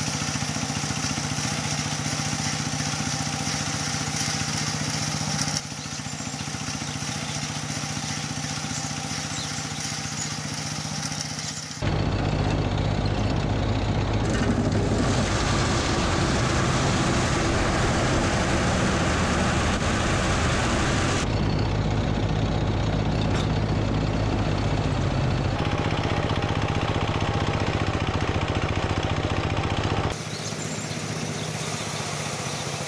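A belt-driven threshing machine and its engine running with a steady low drone as sheaves are fed through it. The sound drops a little about a third of the way in, then turns louder and rougher from about twelve seconds in.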